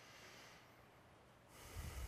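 Near silence with a person's faint breathing, then a louder, short breath close to the microphone near the end.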